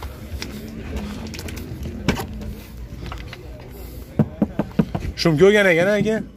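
Voices in the background and a quick run of sharp clicks a little after four seconds, as a sedan's front door is unlatched and swung open. A man starts talking near the end.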